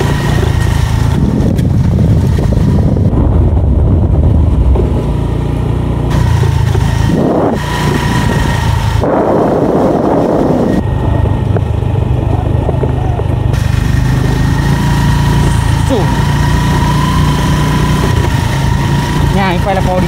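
A motorcycle engine running steadily at low speed, a continuous low hum, with a short burst of rushing noise about nine seconds in.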